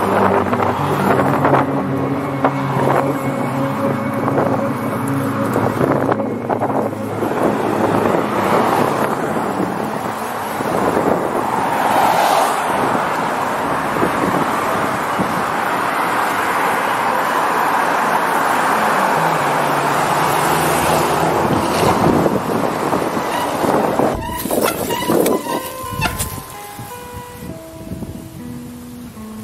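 Road traffic passing, a steady rushing noise of cars going by, mixed with music: held notes in the first few seconds, and plucked guitar notes coming in near the end as the traffic noise drops away.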